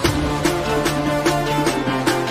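Background music with a steady percussive beat and melody; a new, louder piece begins right at the start, taking over from a guitar piece.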